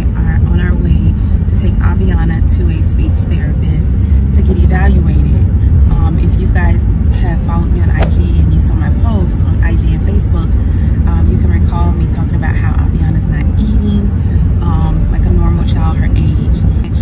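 A woman talking inside a car cabin over a steady low rumble of vehicle and road noise.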